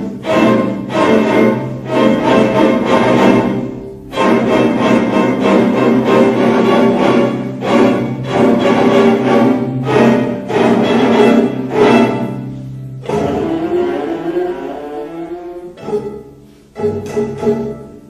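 A string orchestra of violins, violas and cellos plays dense sustained chords over a held low bass note, cut by repeated sharp accented strokes. After about thirteen seconds the bass drops out and the texture thins to quieter sliding pitches.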